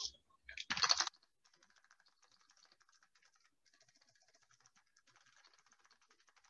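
A brief loud burst of noise about a second in, then faint, rapid computer-keyboard key clicks of someone typing.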